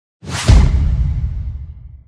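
Logo-intro sound effect: a sudden whoosh that lands in a deep boom about half a second in, its low rumble fading away over the next second and a half.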